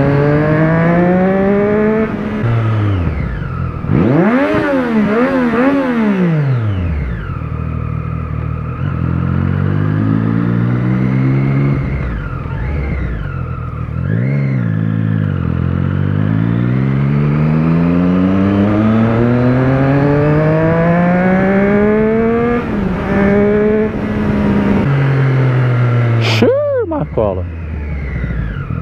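Inline-four sport motorcycle engine pulling through the gears: its pitch climbs, drops at each shift or throttle-off, and climbs again several times, with a few seconds of quick up-and-down revving early on. A sharp click comes near the end as the bike slows.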